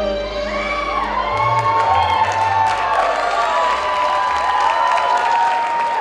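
Dance music playing, with an audience cheering and whooping over it, the cheers swelling about a second in.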